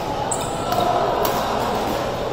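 Badminton being played on an indoor court: a short shoe squeak on the court floor and sharp racket strikes on the shuttlecock, over the steady background noise of a busy sports hall.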